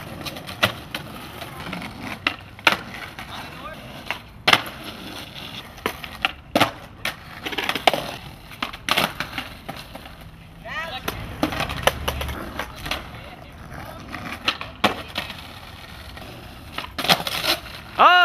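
Skateboards on asphalt doing flatground tricks: sharp clacks of tails popping and boards landing, at irregular intervals, with wheels rolling between them.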